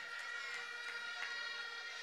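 Faint steady tones from plastic horns blown in a crowd, several pitches held together over a low murmur.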